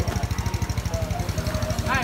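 Motorcycle engine idling with a steady, rapid beat.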